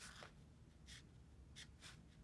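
Faint strokes of a fine paintbrush on watercolor paper: four short brushes of bristles across the sheet.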